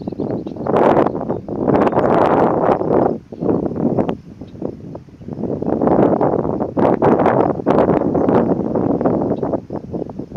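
Wind buffeting the microphone in irregular gusts, a loud rushing noise that swells and dies away every second or two.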